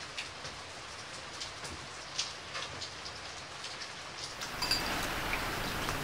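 Steady rain falling, a soft even hiss with scattered drip ticks. It grows louder about four and a half seconds in.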